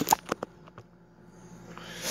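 A phone being set down and propped up on a kitchen counter: a quick run of four or five handling knocks and clicks in the first half second, and one small tick just under a second in.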